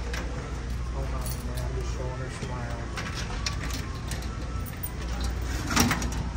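Indoor store background: faint, indistinct voices over a steady low hum, with a few light clicks and one sharper click just before the end.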